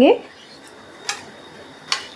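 Metal spoon stirring lentils, potato and water in a stainless steel pressure cooker, knocking against the pot with two short clinks, about a second in and near the end.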